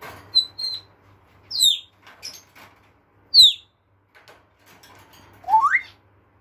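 African grey parrot whistling: a few short high chirps, two sharp falling whistles, and a rising whistle near the end.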